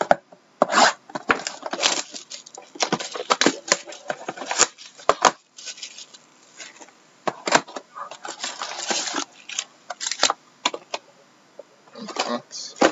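Clear plastic shrink wrap crinkling and tearing as it is pulled off a trading-card box and crumpled by hand, in irregular bursts with sharp clicks. Near the end, the cardboard box is opened and foil card packs are handled.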